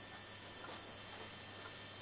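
Faint, regular ticking, about once a second, over a low steady hum.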